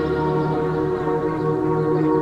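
Background ambient music: sustained, held tones layered over one another, with no clear beat.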